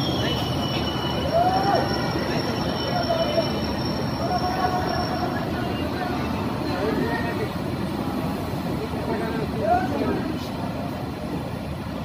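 Train running slowly, heard from on board, with a steady rumble of wheels on the track. A thin, high squeal rides over it during the first half.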